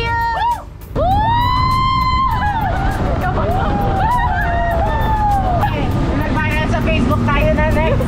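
Speedboat running at speed: a steady low rush of engine, wind and spray. Music with a sung melody plays over it, with a brief drop just before a second in.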